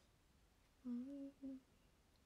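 A woman's short closed-mouth "un" (mm), a murmur of thought or agreement, about a second in. It rises slightly, then a brief second note follows. The rest is faint room tone.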